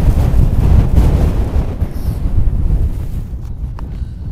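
A strong gust of wind buffeting the microphone and blowing loose snow across the slope, loud at first and dying away over a few seconds.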